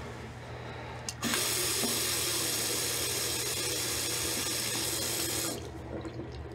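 A tap running into a ceramic washbasin. A click sounds about a second in, then a steady gush of water runs for about four seconds and cuts off.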